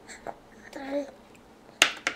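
A short voice sound about a second in, then a single sharp click near the end, the loudest sound here.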